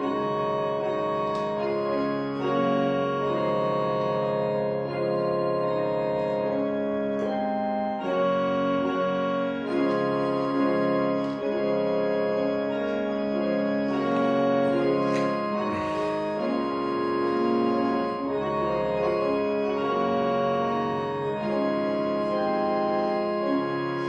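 Electronic organ playing a slow hymn in held chords that change every second or two.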